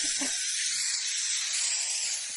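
A steady spray hiss, like an aerosol can being sprayed in a long continuous burst at someone's face.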